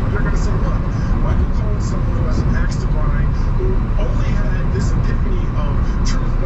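Steady low road and engine rumble inside a car's cabin on a wet freeway, with a news broadcast talking quietly on the car radio underneath.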